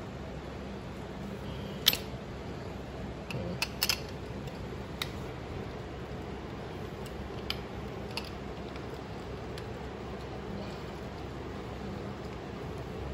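A few scattered sharp clicks and knocks of metal parts and tools being handled while a bent metal rod is worked back straight, the loudest about two seconds in and a quick pair just before four seconds, over a steady low hum of background machinery.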